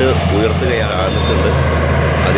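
Heavy diesel earthmoving machinery running steadily with a low drone, with a man's voice talking over it.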